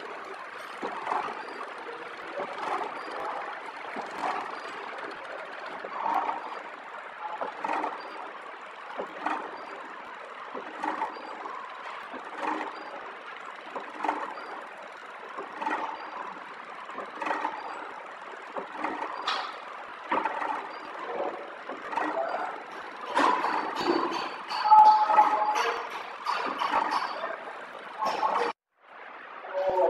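Flow wrap packaging machine running as it wraps seasoning sachets, with a regular mechanical stroke about every second and a half, the cycle of its sealing and cutting jaws. It gets louder and busier near the end.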